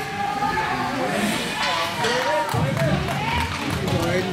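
Spectators' voices and shouts in an echoing ice arena during hockey play, with low thuds and rumbling from about halfway through as play runs along the boards.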